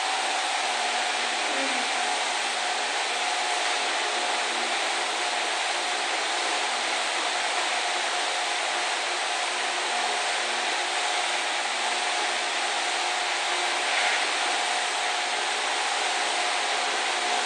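Steady rushing noise with a faint, constant hum tone underneath, unbroken and even in level throughout.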